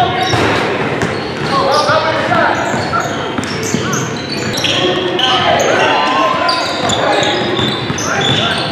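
Gym court sound from a basketball game: a basketball bouncing on the hardwood, short high sneaker squeaks, and players' voices, echoing in a large hall.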